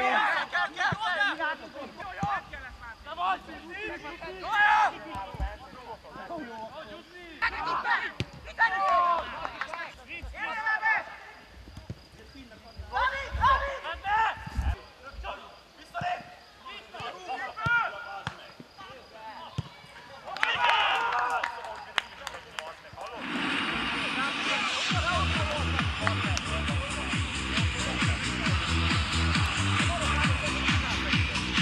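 Players and spectators shouting on a football pitch, in short separate calls. About three-quarters of the way through, music with a steady beat comes in and carries on.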